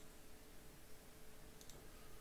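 Near silence with two faint clicks from working a computer, about a second and a half apart, over a faint steady hum.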